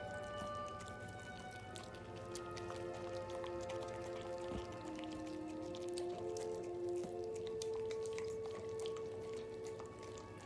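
Small wet clicks of chewing and licking as a husky and a cat eat soft food off a plate, over background music with slow held notes.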